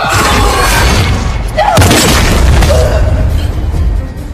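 Dramatic horror film score with a deep boom: about a second and a half in, a loud hit with a steep falling swoop into the bass, the loudest moment, over a dense low rumbling bed.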